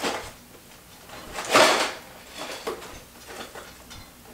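A cardboard LEGO box being handled and pried at by hand, with fingers scraping and rubbing on a stubborn, sealed flap. There is a short scrape at the start and a louder, longer scrape about a second and a half in, with small clicks and taps after it.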